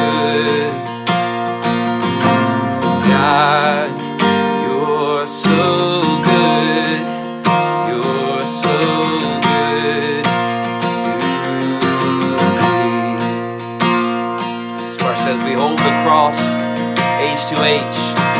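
Acoustic guitar strummed steadily, with a man's singing voice coming in at times.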